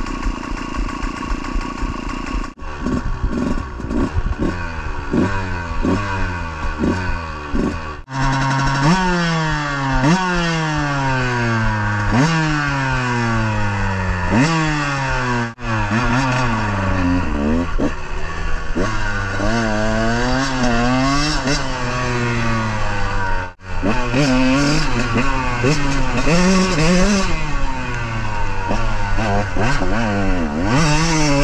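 KTM 150 two-stroke dirt bike engine running steadily, then revved over and over, its pitch rising and falling with the throttle: quick blips about once a second, then longer sweeps. The sound breaks off abruptly several times.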